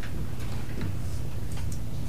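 A steady low hum in the room's sound pickup, with scattered light clicks and rustles of papers being handled at the dais.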